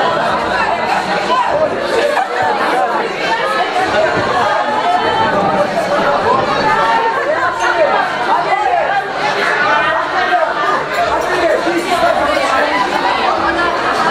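Crowd chatter: many young people talking at once around dinner tables in a large hall, a steady babble of overlapping voices with no single voice standing out.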